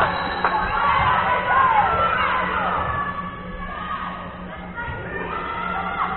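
Several girls' voices shouting and cheering together, loudest in the first half and dying down from about halfway.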